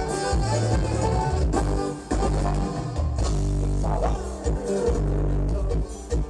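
A live band playing Mexican dance music through a PA, with a heavy, stepping bass line under sustained keyboard chords.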